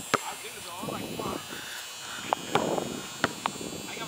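Faint, indistinct voices with a few short sharp knocks scattered through, over a steady faint hiss.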